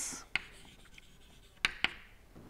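Chalk writing on a blackboard: a few short, sharp taps of the chalk against the board, with quiet between.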